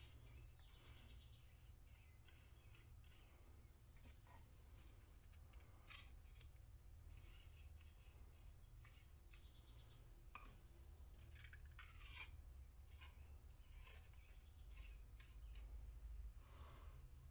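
Near silence with faint, scattered light clicks and scrapes: plastic gold boats being handled and tapped and a small brush sweeping gold flakes into a digital scale's weighing pan, over a low steady hum.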